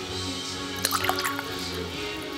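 Music playing, with a brief cluster of clinks and liquid splashes about a second in as ice moves in a glass of liquid.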